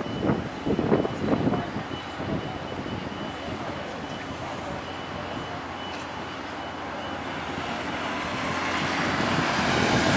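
Outdoor city street noise, with a few voices in the first second and a half. Then a road vehicle draws nearer and gets steadily louder over the last two seconds.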